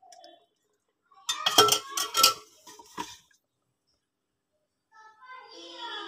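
A quick cluster of clinks and knocks from utensils against a metal cooking pot, with one more knock a second later, as cooking oil is poured in and the meat is moved with a spoon. A faint voice sounds in the background near the end.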